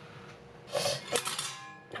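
Metal utensils clinking against a stainless steel roasting pan and its wire rack as a roast duck is lifted and turned. After a quiet start, a brief scrape comes about three-quarters of a second in, then two sharp clinks and a short metallic ring.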